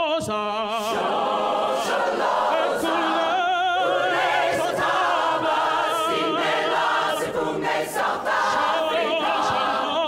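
Mixed-voice choir singing in harmony, with a male soloist singing into a handheld microphone. Several held notes carry a wide vibrato.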